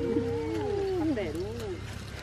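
Women's voices singing a Tày khắp folk song: a held note gives way to several overlapping voice lines that slide up and down and waver, dying away near the end.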